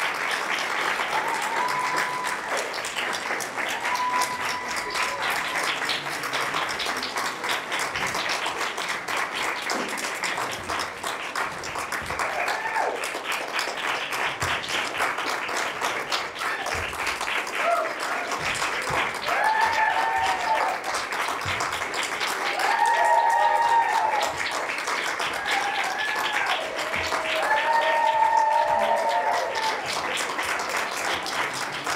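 Theatre audience applauding steadily through a curtain call, with shouted cheers and whoops rising over the clapping. The cheering grows more frequent in the second half and is loudest about two-thirds of the way in and again near the end.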